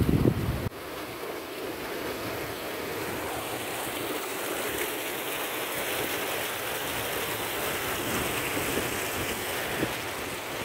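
Steady rush of muddy floodwater from a breached irrigation canal running across a field. A low buffeting, like wind on the microphone, fills the first moment before the shot changes.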